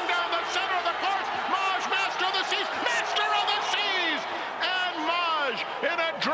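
A male race caller's fast, excited, high-pitched commentary calling a close horse-race finish, over a steady noisy haze of crowd sound.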